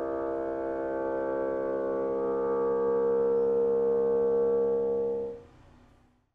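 Solo bassoon holding one long, steady note that swells slightly and then stops about five and a half seconds in.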